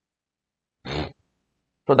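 A man's brief sigh about a second in, the rest near silence; speech starts again right at the end.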